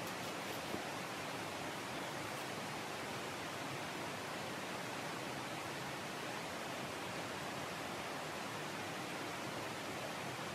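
Steady, even hiss of background noise with no clear source, and a couple of faint ticks about half a second in.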